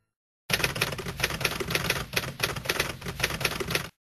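Typewriter keys clattering in a rapid run of strikes, laid in as a sound effect. It starts abruptly about half a second in and cuts off just as abruptly near the end.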